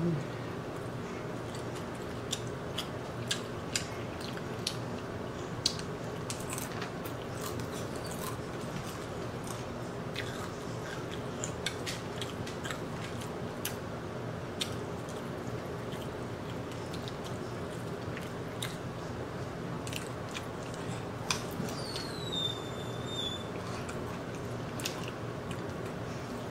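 Fried chicken being torn apart by hand and eaten: scattered sharp clicks and wet smacks of pulling meat and chewing. They sit over the steady hum of a room air conditioner.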